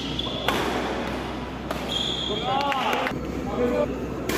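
Badminton rally: sharp racket strikes on the shuttlecock, a few seconds apart, the loudest about half a second in, mixed with short squeaks of shoes on the court floor.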